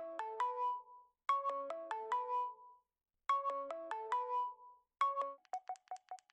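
Ringtone-like music: a short phrase of clear, bell-like synth notes repeated three times about every two seconds, then a single note repeated quickly, about five times a second, near the end.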